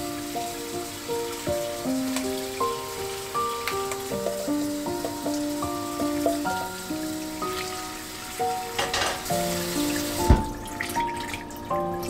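Tap water running onto noodles in a metal mesh strainer and into a stainless sink, under background music. The water stops about ten seconds in, with a single knock.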